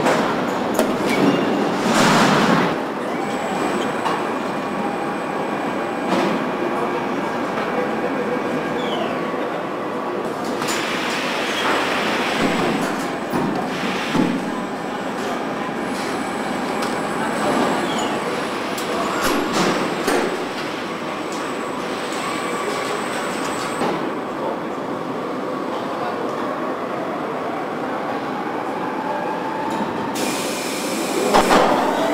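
Car assembly-line machinery running: a steady mechanical rumble from conveyors and overhead body carriers, with scattered metallic clanks and a few short whines.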